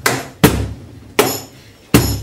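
Cajón struck in a slow, steady beat: three deep wooden knocks about three quarters of a second apart, each with a low boom.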